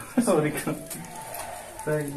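A man's voice in short bursts of speech or laughter, one just after the start and another near the end, with a quieter pause between.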